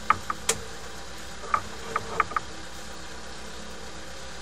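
A steady low engine-like hum, with a handful of short, sharp clicks in the first two and a half seconds.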